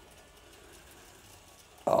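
Faint, steady running of a 00 gauge model locomotive's motor and wheels on the track as it hauls bogie coaches up a gradient, straining under the load; a man's 'Oh' cuts in near the end.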